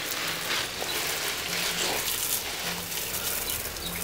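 Water spraying from a garden hose's spray wand onto plants and soil: a steady hiss.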